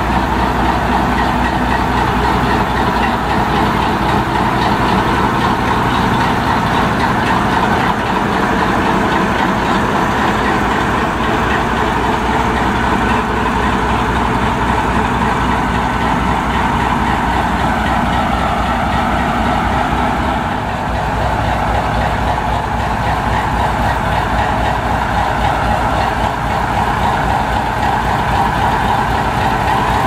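VR Class Dv16 diesel locomotive's engine idling steadily, with a fast low beat.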